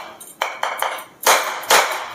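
A whole brown coconut is struck repeatedly with a metal tool to crack its shell. There are about five sharp knocks at an uneven pace, and each one rings briefly.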